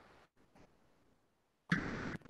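Broken video-call audio from a remote participant's failing connection: near-silent dropouts broken by faint bursts of hiss, then a louder, noisy burst near the end.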